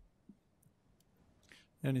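A quiet pause in a small meeting room with a few faint, sharp clicks, then a man starts speaking near the end.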